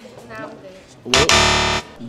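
A loud, harsh wrong-answer buzzer sound effect sounds once for under a second, about a second in, marking a rejected match.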